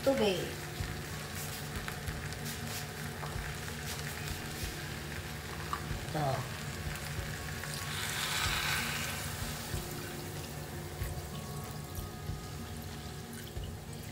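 Rice and chicken sizzling in a pot over steady low crackling, then water poured from a glass jar into the pot, splashing loudest about eight seconds in.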